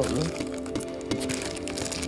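Thin plastic bag crinkling and crackling in the hands as a pistol magazine wrapped in it is handled, over steady background music.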